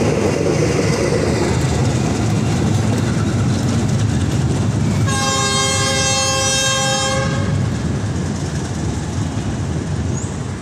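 Siantar Ekspres passenger train's coaches rolling past on the rails with a steady rumble that eases off as the train draws away. About halfway through, the train horn sounds one long blast lasting about two and a half seconds.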